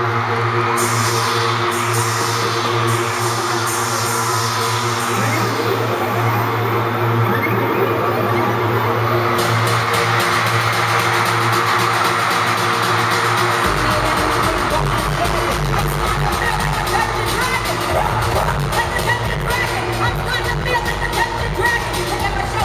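Electronic concert intro music over a large arena PA, recorded from the audience. Sustained synth chords with falling swooshes up high give way, about two-thirds of the way through, to a heavy bass beat.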